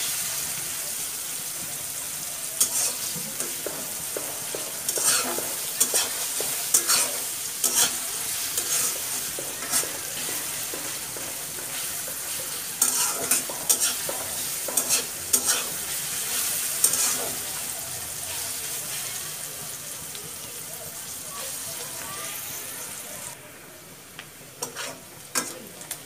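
Sliced onions sizzling in hot oil in a metal karahi, with a spatula scraping and tapping against the pan at irregular intervals as they are stirred. The sizzle quietens suddenly a few seconds before the end.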